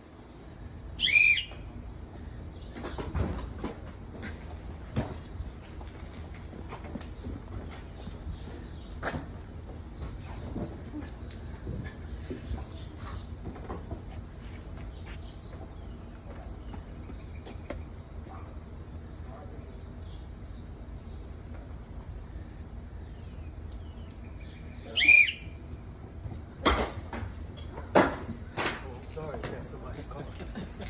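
Scattered clicks, knocks and rustling of people moving between the seats of a car with its doors open and buckling and unbuckling seat belts. Two short high chirps sound, one about a second in and one near the end, and there is a cluster of louder knocks and thumps just after the second chirp.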